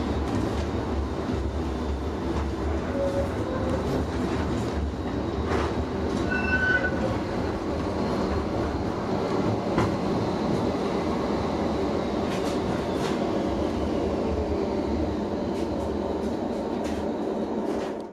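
Steady low rumble of a Duewag Pt-type light-rail tram car running, heard from inside the passenger compartment, with scattered clicks from the wheels over the track. A brief high-pitched tone sounds about six seconds in.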